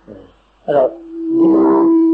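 A man speaking Burmese says two short syllables, then holds one long, steady, drawn-out vowel at an even pitch for over a second.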